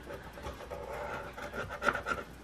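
A coin scraping the latex coating off a scratch-off lottery ticket: quiet, repeated rasping strokes, with a louder scrape near the end.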